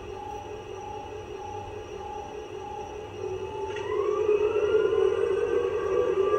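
Model locomotive sound: a steady hum with a higher tone pulsing about twice a second, then, nearly four seconds in, a rising whine that grows louder as the locomotive starts to pull away.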